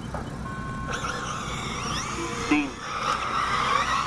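An electronic start tone beeps, then a field of 1/8-scale electric buggies launches off the grid, their brushless motors whining and rising in pitch over tyre noise on dirt.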